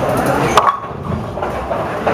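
A bowling ball hits the pins about half a second in, with a sharp clatter, over the steady background din of a bowling alley.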